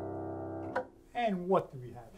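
Pramberger grand piano by Young Chang, a held chord ringing out and stopping abruptly under a second in. A man's voice follows briefly.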